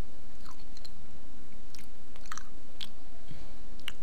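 Steady low background hum with a few faint, scattered clicks and small sharp noises.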